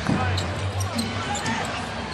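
A basketball being dribbled on a hardwood court, with short high squeaks over a steady low arena hum.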